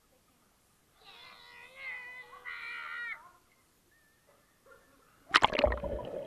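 A high-pitched voice calls out about a second in, then about five seconds in a toddler jumps into a swimming pool with a loud splash, followed by churning water and bubbles as the camera at the waterline goes under. The sound comes through the waterproof case of a cheap action camera.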